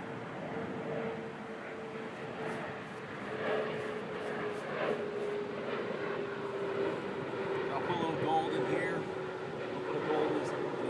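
Aircraft engine drone passing overhead, a steady hum that slowly falls in pitch.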